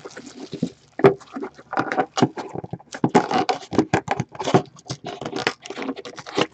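Plastic shrink-wrap being torn and crinkled off a sealed box of hockey cards, a busy run of short crackles and rustles.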